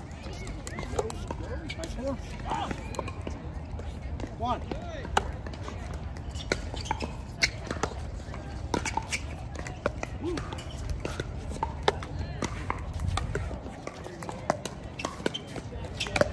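Pickleball paddles hitting a plastic pickleball during a doubles rally: sharp pops at irregular intervals, some from neighbouring courts. Indistinct players' voices and a steady low rumble lie underneath.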